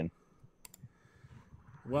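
A short pause in a conversation holding a couple of faint, sharp clicks a little over half a second in, with a man's voice starting again near the end.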